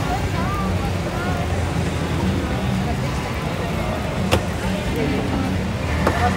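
Busy street-market background: a steady low rumble with faint voices in the crowd, and a single sharp click about four seconds in.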